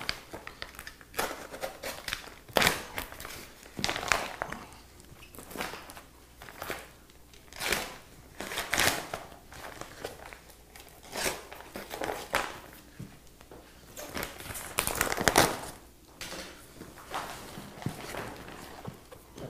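Stiff brown paper postal wrapping crinkling and tearing in irregular rustles as it is cut open and peeled away from a taped cardboard box.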